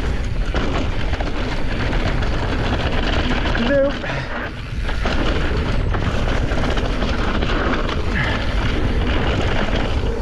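Wind buffeting the microphone and mountain bike tyres rolling over a dry dirt trail, a steady loud rush of noise. About four seconds in it drops briefly for about a second, then returns.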